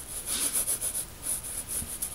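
Graphite pencil shading on paper: quick repeated back-and-forth strokes of the lead scratching across the sheet.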